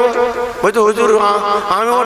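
A man's voice in drawn-out, sung tones, with a long held note in the second half. This is the melodic, chanted delivery of a preacher's sermon.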